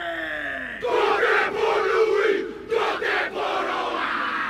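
Rugby players performing a haka. A leader's drawn-out call slides down in pitch and dies away just under a second in, then the whole team shouts the chant loudly in unison. There is a brief break in the chant past the middle.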